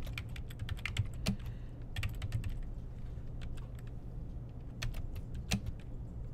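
Typing on a computer keyboard: irregular key clicks in short runs with pauses between them.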